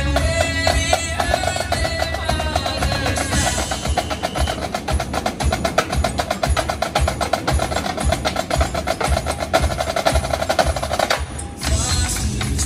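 A drumline of four marching snare drums playing together over a backing track with a melody. From about three seconds in, the snares play rapid strokes as dense as a roll, which stop sharply near the end.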